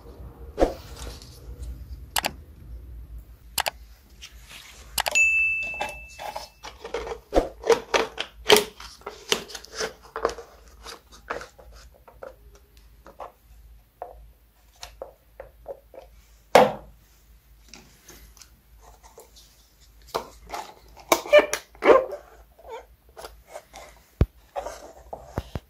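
Pine cones and thin clear plastic cups handled on a workbench: irregular clicks, taps and rustles of plastic and cone scales. There is a brief high squeak about five seconds in, a sharp knock about two-thirds through, and a flurry of knocks near the end.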